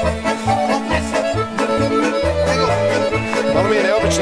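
Lively accordion-led folk dance music of the kolo kind, with a steady pulsing bass beat.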